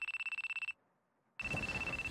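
Mobile phone ringing with a high, fast-trilling electronic ring. One ring ends under a second in, and after a short pause the next ring starts and carries on.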